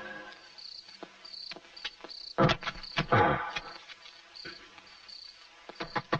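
Crickets chirping in a steady repeated pattern, with a few knocks and thumps over it, the loudest about two and a half and three seconds in.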